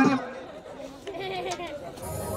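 Indistinct talking and chatter from voices, with no music playing.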